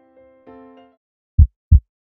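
Soft keyboard music ends just under a second in. About a second and a half in comes a heartbeat sound effect: a loud, low double thump, lub-dub.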